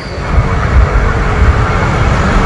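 Loud outdoor background noise: a steady low rumble with a hiss above it, with no voice in it.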